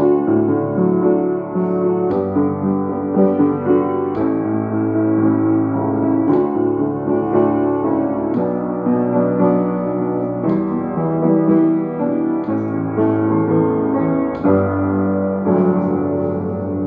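Grand piano played in slow, sustained chords: a simple hymn-like tune on the I, IV and V chords. New chords are struck about every two seconds at a steady pace.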